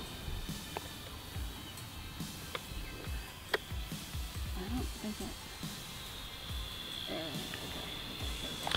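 Faint, steady high-pitched whine of a small toy quadcopter's motors flying at a distance, with low wind rumble on the microphone and a few light clicks.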